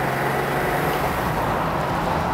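BMW E21 323i's 2.3-litre straight-six engine running steadily on the move, heard from inside the cabin along with road noise. A low hum fades about halfway through.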